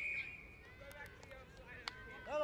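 A brief shrill whistle blast right at the start, typical of a referee's whistle at the tackle. Faint spectator voices and a few sharp clicks follow.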